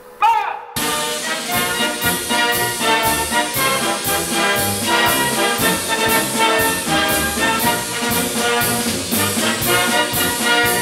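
Brass band march music with a steady beat of about two a second, starting about a second in, just after a short called word of command at the start.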